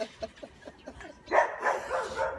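A dog barking: several loud barks in the second half.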